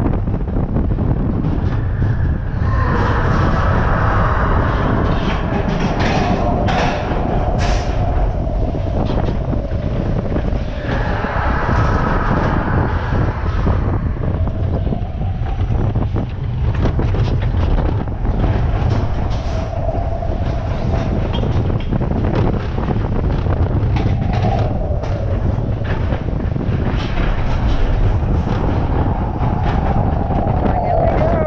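Matterhorn Bobsleds coaster car, an Arrow Dynamics bobsled, running along its tubular steel track: a loud, continuous rumble of wheels on rails, broken by many sharp knocks and jolts from a very rough ride. A higher screech rises over it for a few seconds, twice in the first half.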